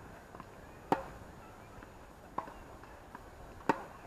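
Tennis ball being struck by rackets and bouncing on a hard court during a rally: three sharp pocks about a second and a half apart, the loudest about a second in and near the end, with fainter pocks in between.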